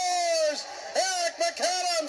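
Hockey play-by-play announcer's excited goal call: the end of a long held shout that falls slightly in pitch and breaks off about half a second in, followed by more shouted words.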